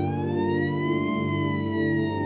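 A siren wailing: its pitch rises for about the first second, then slowly falls, over a low sustained music bed.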